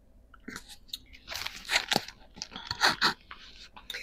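Irregular rustling and crinkling right at a handheld clip-on microphone with a furry windscreen: handling noise, in a scatter of short crackles that grow louder in the middle.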